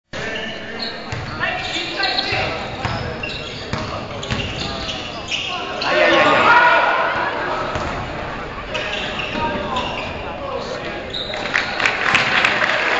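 Basketball bouncing on a gym floor amid the shouting voices of players and spectators in a hall. The voices swell loudly about halfway through.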